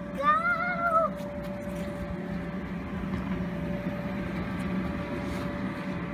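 Electric bounce-house blower running steadily with an even hum, inflating the castle. In the first second a short, high-pitched wavering cry sounds over it.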